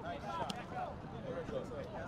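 Overlapping voices of many people talking and calling out at once, with no single clear speaker, and a sharp click about half a second in.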